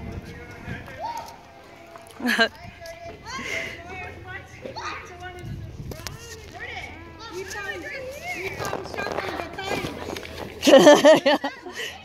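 Children's voices calling and shouting while they play, with a loud burst of laughter near the end.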